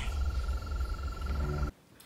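Swamp night ambience from a film soundtrack: a steady, high, rapidly pulsing frog trill over a low rumble, cutting off abruptly near the end.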